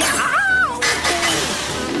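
Cartoon slapstick sound effects over background music: a loud noisy crash-like burst that cuts off just under a second in, with a sliding cry that rises, holds and falls.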